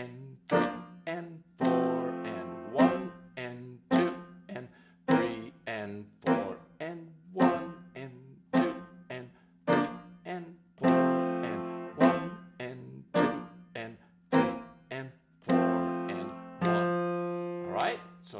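Grand piano played by the left hand alone: short detached chords on a steady beat, a little under two a second, moving between the F major (one) chord and the B-flat (four) chord. A few chords are held longer.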